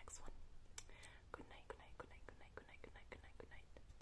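Soft whispering: a quick run of short whispered syllables through the second half, with a single sharp click just under a second in.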